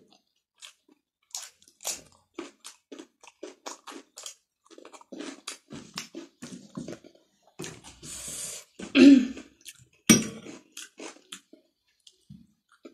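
Close-miked chewing and crunching of food, including raw cucumber, a run of wet mouth clicks a few times a second. Two louder mouth sounds come about two-thirds of the way through.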